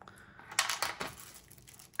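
Small plastic zip-lock bags crinkling as they are picked up and handled, a short burst of crackling about half a second in that fades by a second in.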